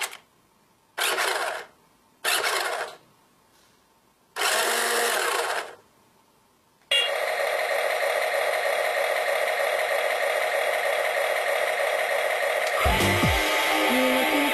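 Brief whirs from the small electric motors and gears of a toy RC missile vehicle running with its sound effects switched off, three times in the first six seconds. From about seven seconds in, loud continuous music takes over.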